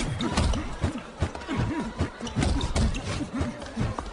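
Animated boxing sound effects: a rapid run of gloved punches landing with dull thuds, several a second, as short close-range blows are thrown and blocked.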